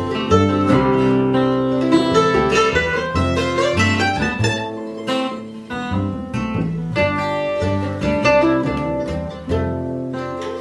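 Instrumental break of an acoustic folk trio: acoustic guitar strumming, upright double bass plucking low notes, and mandolin picking quick notes above them.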